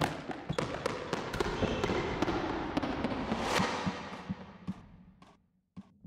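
Sound effects for an animated logo outro: a rapid, irregular run of sharp knocks and clicks with a swelling whoosh about three and a half seconds in, over a low tone that slides down in pitch. It fades out about five seconds in, leaving a couple of single clicks near the end.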